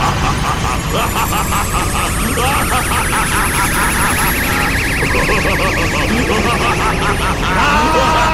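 An animated character's drawn-out, pulsing yell while charging an energy blast, over a faint rising high whine. Near the end a new sustained pitched sound takes over.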